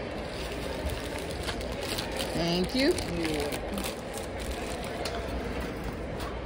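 Steady low room noise with a few faint clicks, and a short spoken phrase about halfway through.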